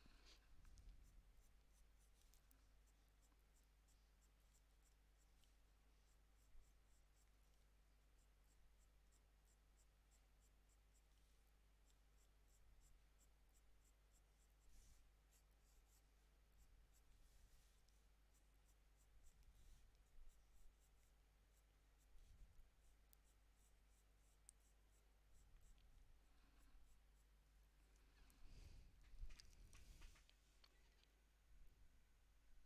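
Near silence: faint, scattered scratching of a wax-based Prismacolor Premier coloured pencil making short strokes on toned drawing paper, over a steady low hum.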